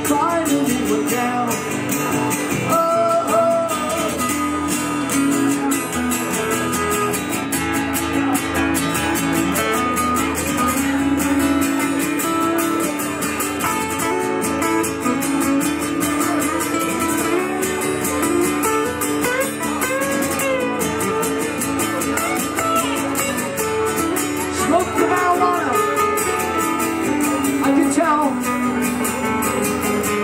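Two acoustic guitars playing an instrumental break, chords strummed under a melodic lead line that slides in pitch.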